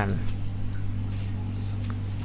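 A few faint computer mouse clicks while keyframes are dragged, over a steady low electrical hum.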